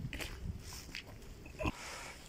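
Footsteps on a concrete yard with a dog moving about, and one short louder sound near the end.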